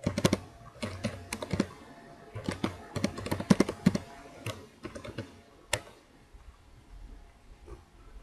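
Computer keyboard typing: a quick run of keystrokes that thins out after about six seconds.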